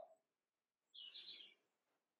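Near silence, with one short, faint bird chirp about a second in.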